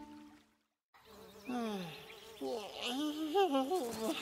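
A buzzing insect, its pitch swooping down and then wavering up and down; it starts about a second in, after a brief held tone fades into a short silence.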